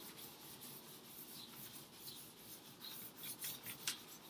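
Chamois cloth rubbing over charcoal-covered drawing paper in faint, repeated strokes, smoothing the charcoal into an even mid-tone. A brief click near the end.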